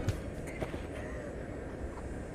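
Quiet outdoor ambience picked up by a camera microphone, with a brief soft thump about half a second in.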